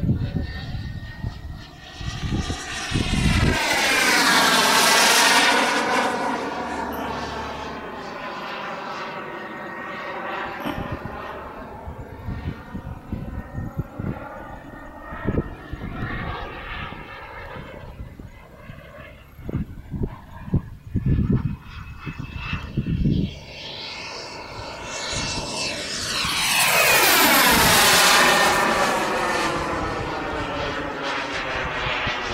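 Model T-45 Navy Hawk jet flying by, its jet noise swelling and sweeping in pitch as it passes. It is loudest about four seconds in and again near the end.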